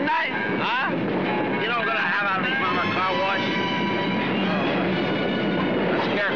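A train running, a steady dense rumble with sustained tones, with people's voices calling out over it in short bursts near the start and about two to three seconds in.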